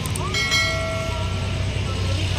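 Low rumble of passing motor traffic. Over it a vehicle horn sounds one steady tone for about a second and a half.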